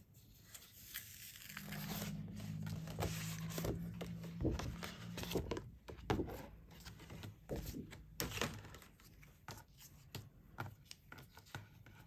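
Paper stickers with a laminated top layer being peeled off their cut sheet and handled: crinkly tearing and rustling with scattered light taps and scrapes. A faint low hum runs from about two to five seconds in.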